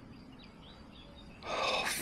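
Faint outdoor background with a few faint bird chirps, then about a second and a half in a breathy rush of noise as a man draws in breath just before speaking.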